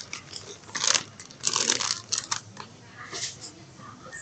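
Plastic potato chip bag crinkling as it is handled, in several crackling bursts: one about a second in, a longer run from about one and a half to two and a half seconds, and a smaller one near the end.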